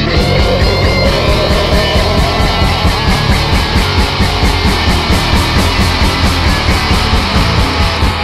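Live rock band playing loud: electric guitar, with drums and cymbals coming in right at the start on a fast, steady beat of about five hits a second.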